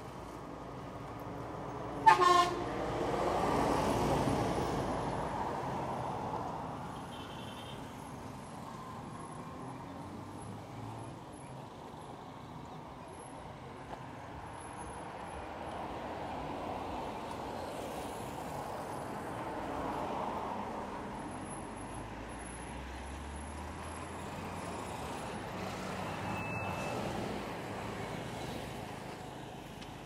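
Road traffic on a city street: a vehicle horn gives a short, loud toot about two seconds in, followed by a vehicle passing close. Further vehicles pass more quietly later on.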